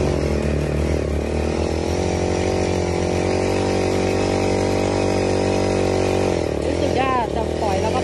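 Small engine driving a high-pressure sprayer pump, running steadily while the turbo-head spray wand shoots a jet of water. A woman's voice comes in near the end.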